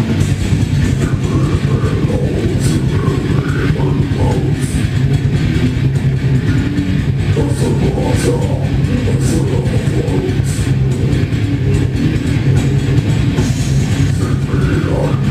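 A metal band playing live: distorted electric guitars, bass and drums, loud and steady, with the low end heaviest.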